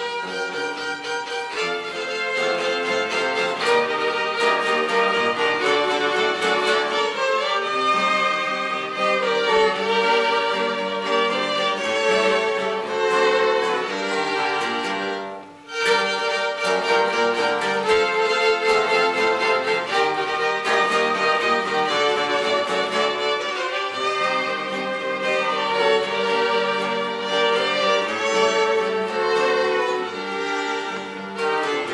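Three violins playing a Mexican Tierra Caliente pasodoble in three-part harmony, melody with second and third parts, over two acoustic guitars accompanying. The music breaks off for a moment about halfway through, then carries on.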